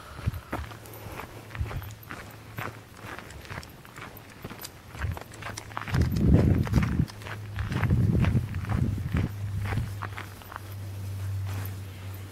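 Footsteps crunching on a gravel path at a walking pace, about two a second, over a steady low hum, with two louder stretches of low rustling noise about six and eight seconds in.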